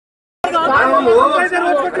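Men talking over one another in a crowd, starting abruptly about half a second in after a moment of silence.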